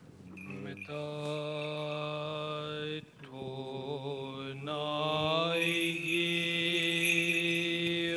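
Byzantine chant from a Greek Orthodox funeral service: a single voice holding long, slowly changing notes, with short breaks about three seconds in and again near five seconds.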